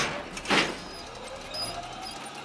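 Cartoon sound effect of a pretend rocket ride setting off along its track: a short hissing burst about half a second in, then a faint steady hum with a slowly rising tone as it moves.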